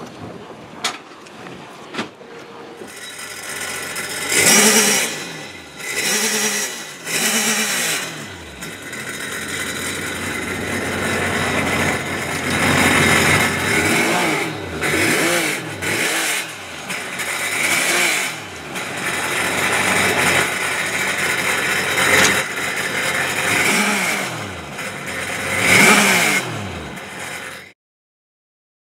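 An engine revving again and again, each rev rising and then falling in pitch, until the sound cuts off suddenly near the end.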